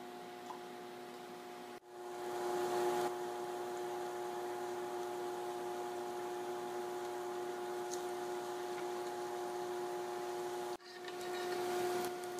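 Battered mini corn dogs deep-frying in a saucepan of hot peanut oil: a steady sizzle that swells briefly about two seconds in. Under it runs a steady hum from the induction cooktop.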